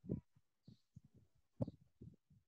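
Faint, irregular low thumps and knocks, with two louder ones: one just after the start and another about a second and a half later.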